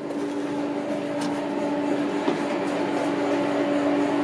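A steady machine hum, one constant mid-pitched tone over a hiss, growing slightly louder.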